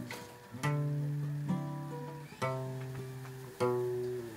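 Background music: acoustic guitar chords strummed and left to ring, a new chord struck every second or two.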